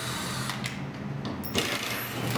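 Cordless drill motor running in short bursts, stopping briefly twice, with a few sharp clicks.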